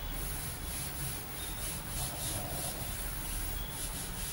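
A cloth duster wiping chalk off a blackboard in quick back-and-forth strokes, several a second, giving a dry rubbing sound.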